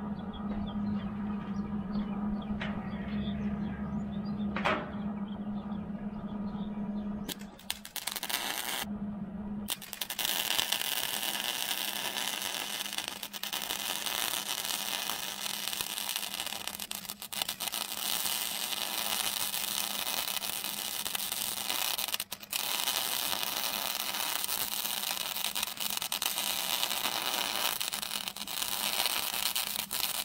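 MIG welder with 0.030 solid wire and shielding gas running a weld bead, a steady crackling arc, to build up fill on a log splitter's beam where the wedge broke off. Before the arc starts, about ten seconds in, a steady hum with a few faint clicks; the arc briefly stops a couple of times.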